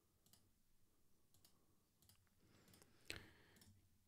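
Near silence with a few faint clicks from operating the computer, the loudest about three seconds in.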